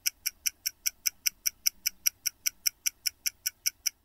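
Mechanical stopwatch ticking steadily, about five sharp ticks a second.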